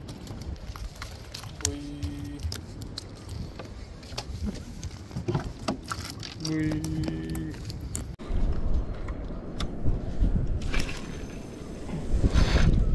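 Scattered clicks and knocks of handling, with a couple of brief murmured voice sounds. After a cut about eight seconds in, a low rumble of wind on the microphone.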